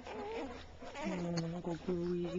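Newborn puppies whimpering as they nurse, a thin wavering cry in the first second, followed by a low steady hum in short broken stretches.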